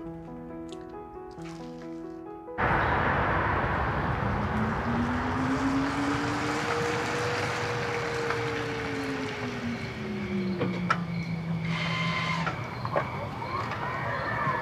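Soft background music, cut off sharply about two and a half seconds in by a steady rush of noise as a car drives up a wet street, its engine note rising, then falling and levelling off before it stops near the end. A few light clicks follow.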